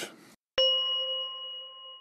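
A single bright chime struck about half a second in after a moment of silence, ringing on and fading slowly: the end-logo sting of a news channel's video.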